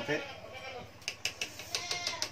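Chopsticks clicking against a metal cooking pot while soup is stirred: a quick run of about seven light taps in the second half, with a faint metallic ring.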